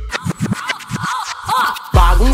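DJ turntable scratching in a break of a Brazilian funk track, with the bass beat dropped out. The scratches are a quick run of short strokes sweeping up and down in pitch, and the beat comes back in at the end.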